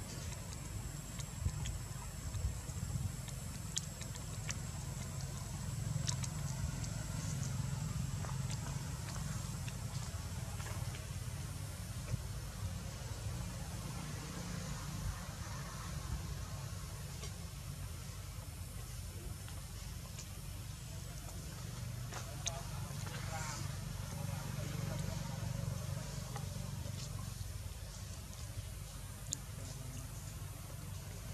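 Steady low outdoor rumble with faint, indistinct voices and occasional small clicks.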